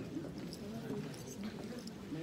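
Muffled, indistinct voices in the background, with a few light clicks.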